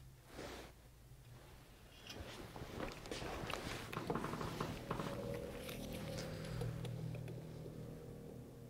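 Faint handling of precision measuring tools: a short swish about half a second in, then from about two seconds a run of small clicks and rustles as a telescoping gauge is taken out of a small-engine cylinder bore and set between the jaws of a micrometer on a bench stand.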